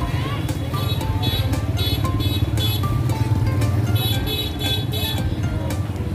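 Music with a beat and short melodic notes plays over crowded street noise: motorbike engines running and people talking.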